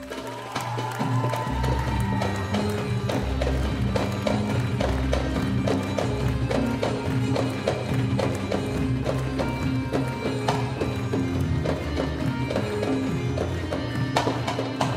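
Live Egyptian belly-dance music: darbuka and frame drums play a quick, driving rhythm over a keyboard bass and melody. The melody has a sliding note near the start.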